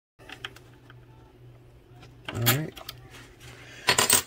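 Small metal parts being handled: faint clicks and taps of a brass stuffing tube against an aluminium boat strut over a low steady hum, with a short wordless vocal sound about halfway through and a sharp click near the end.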